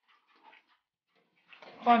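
A red calf drinking water from a metal bucket, a few faint sounds in the first half second.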